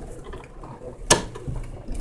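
3D printer running a print, its stepper motors making a quiet mechanical noise, with one sharp click about a second in.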